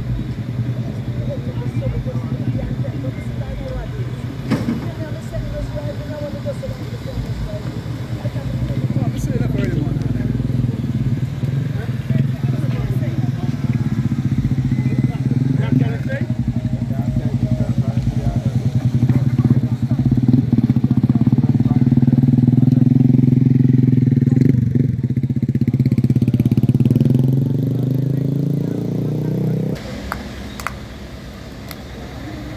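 A vehicle engine running close by: a steady low hum that grows louder through the second half and drops away near the end, with people's voices in the background.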